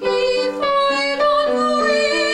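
A woman singing a classical art song or aria in trained operatic voice, moving through a series of short notes, with piano accompaniment.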